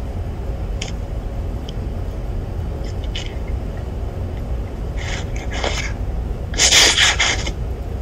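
Steady low hum of a room's ventilation, with a few short hissing noises about five seconds in and a louder one near the seven-second mark.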